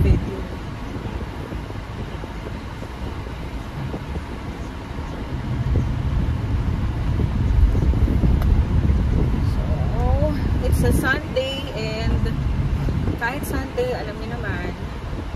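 Car interior while driving: a steady low rumble of road and engine noise in the cabin, growing louder about halfway through. A woman's voice speaks briefly near the end.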